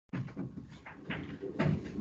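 Sound cutting back in abruptly after a dead-silent dropout, then a run of irregular soft knocks and clicks, like small objects or furniture being handled in a room.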